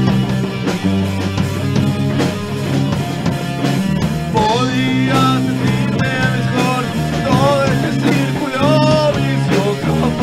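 Loud post-hardcore rock music with bass, drums and guitar. About four seconds in, a high melodic line that bends up and down in pitch enters over the band.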